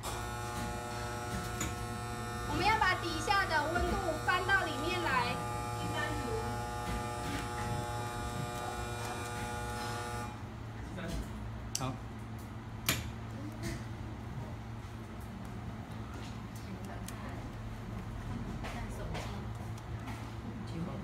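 A steady electric buzz with many pitched overtones, which cuts off suddenly about ten seconds in.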